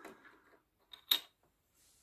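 A single short, sharp click of a hard object set down on a table about a second in, with a fainter tick just before it.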